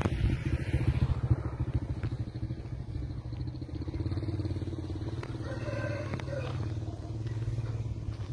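Motorcycle engine running steadily, a continuous low hum with rapid pulsing.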